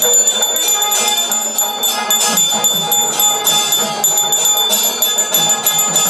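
Brass puja hand bell rung rapidly and continuously during the aarti lamp-waving, its high ringing tone held throughout, over traditional music.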